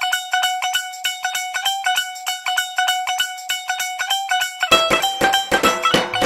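Music: a thin, high plucked-string melody of quick repeated notes, joined near the end by a fuller backing with a low beat.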